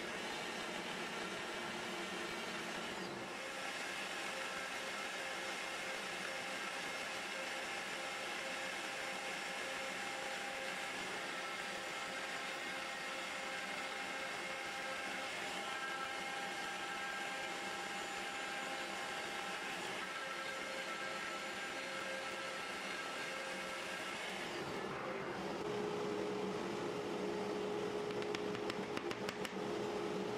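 Three-axis CNC mill's spindle running steadily with a whine, as the machine runs a contour toolpath around a wooden part. About 25 s in the sound changes to a steadier single-pitched hum.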